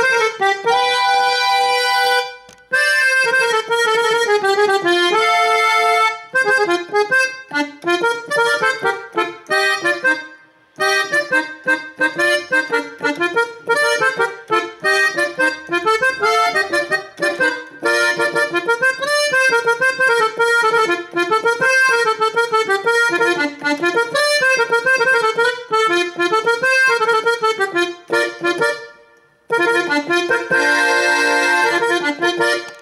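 Sampled Gabbanelli M101 button accordion in swing tuning, played from a Korg Oasys keyboard: a melody of notes with a few short breaks.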